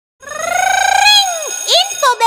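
Animated channel-logo sound sting: a high, drawn-out tone with a slight wobble that rises slowly for about a second, then drops away, followed by a quick upward swoop near the end.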